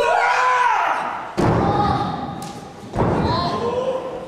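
Bodies hitting the canvas of a wrestling ring: two heavy thuds about a second and a half apart, each with a low rumble from the ring. High-pitched shouting comes between them.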